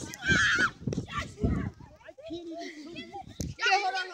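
Children's voices, shouting and chattering too unclearly for words, with loud calls at the start and again near the end.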